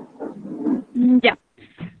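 Speech only: faint talk, then a single short word ("ya") from a woman's voice over a video-call connection.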